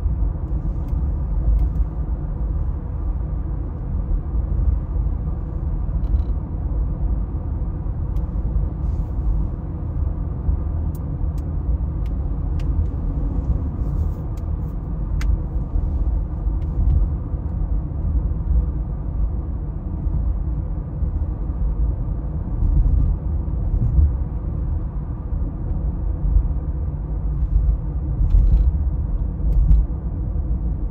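Steady low rumble of a car's engine and tyre noise heard from inside the cabin while driving.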